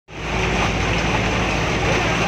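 A bus engine running as the bus ploughs through deep flood water, with the water rushing and churning steadily along its side, heard through the open doorway.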